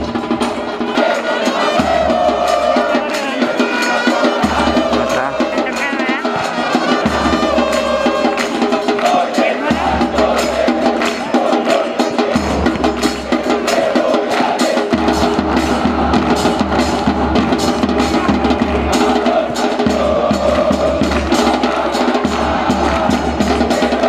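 Stadium crowd of football fans singing a chant together, driven by steady beats of a bass drum and other percussion.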